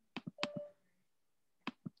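Computer mouse clicks, heard as three quick double-clicks: two pairs in the first half-second and another pair near the end.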